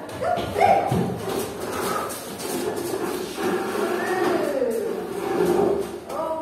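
Several young children's voices calling out and shouting over one another, pitches sliding up and down, with a few short knocks of chairs and feet as they move.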